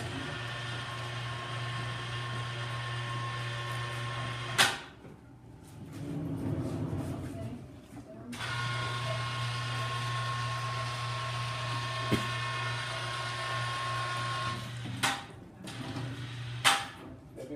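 Electric chain hoist motor running with a steady hum and whine as it lifts a crucible out of a furnace. It stops with a click after about four and a half seconds, then runs again for about seven seconds as the crucible is lowered for the pour, stopping with another click near the end.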